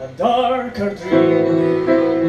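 Live singing with violin accompaniment. After a brief drop at the start, a voice sings a short, wavering line, and held notes follow from about a second in.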